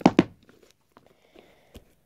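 Plastic roller-skate wheel being forced into its socket in the front of a shoe sole: two sharp clacks right at the start, then faint handling of the shoe.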